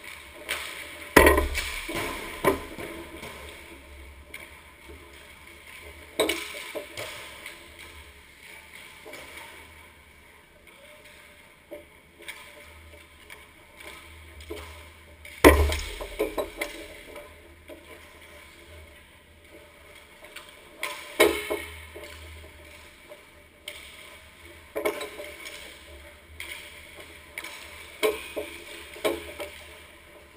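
Hockey pucks being shot during warm-up: about six sharp cracks as pucks strike sticks, the boards and the goal, each ringing briefly through the arena, with the loudest about a second in and midway through. Skates scrape and glide on the ice in between.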